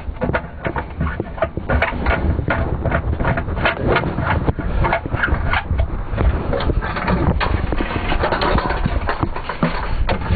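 Irregular knocks and clatter from handling the metal canisters of a homemade charcoal gasifier as the unit is fitted together and set in place, over a steady low rumble.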